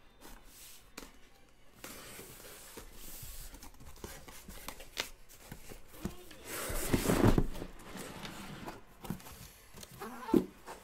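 Cardboard shipping case being opened by hand: tape tearing and cardboard rustling and rubbing, with scattered clicks and a louder scraping bump about seven seconds in as the case is worked off the boxes inside.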